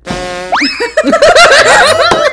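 A comic cartoon sound effect: a held tone that slides sharply up in pitch about half a second in, followed by repeated bursts of laughter.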